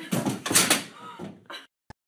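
A person's body crashing onto a bed during a failed flip: a loud jumble of thumps and rustling in the first second, then a shorter knock. The sound cuts off suddenly near the end.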